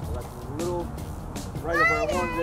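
A young child's high-pitched voice calling out twice in short excited exclamations, the second louder and rising in pitch near the end, over wind rumble on the microphone.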